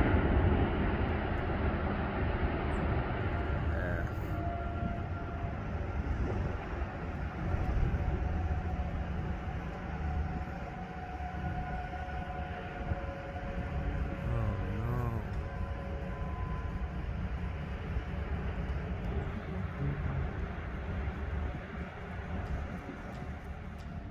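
Tornado wind: a steady low rumbling roar with gusty wind rushing over the phone's microphone. Faint held whistling tones drift in and out through the middle.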